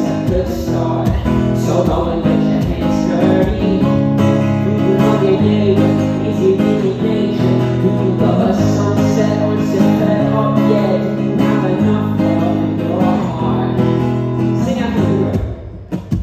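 Live acoustic guitar strumming chords with a man singing into a microphone; the music drops away just before the end.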